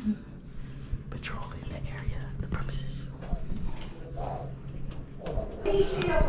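A sigh, then soft whispering and hushed voices over a steady low hum.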